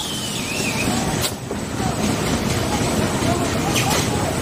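Carton folder gluer running: a steady, continuous mechanical noise, with two brief sharp sounds, about a second in and near the end.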